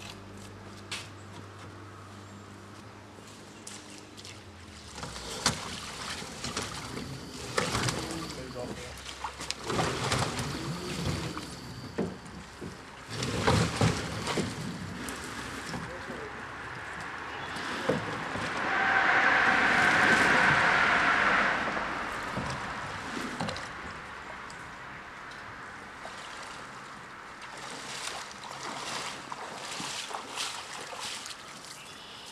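Water sloshing and splashing as a submersible pump is carried and waded into a shallow river, with people's voices. A low engine hum dies away about five seconds in, and a loud hiss lasts about three seconds about two-thirds of the way through.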